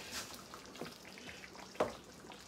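A large pot of okra soup simmering on the stove, with a faint, steady sizzle and bubbling. A single sharp click near the end.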